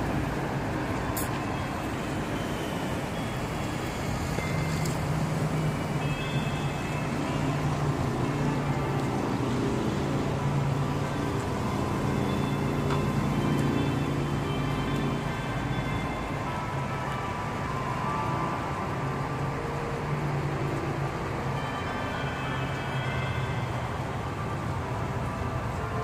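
Steady street traffic noise, with music playing at the same time.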